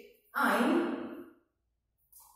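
A man's voice holding one drawn-out syllable for about a second, loudest at the start and fading away.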